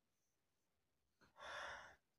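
A single breathy sigh about one and a half seconds in, after near silence.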